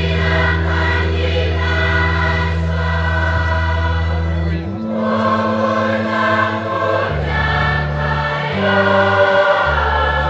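A choir singing a hymn over held bass notes that change pitch every second or two in the second half.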